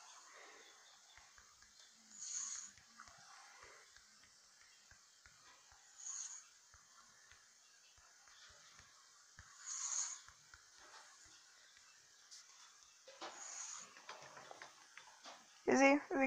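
Quiet room with faint, short breathy bursts every few seconds, like whispers or stifled laughs close to the phone's microphone, and faint low ticks in between as the phone is tapped and handled.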